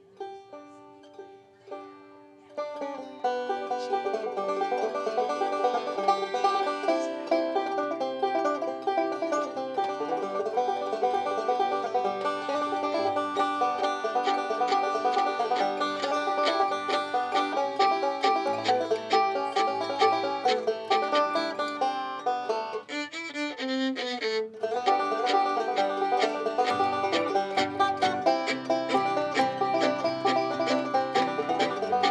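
Live acoustic band of banjo, fiddle, acoustic guitar and hand-played frame drum playing an upbeat bluegrass dance tune. A few quiet notes come first, then the full band comes in about three seconds in, with a short drop-out about three quarters of the way through.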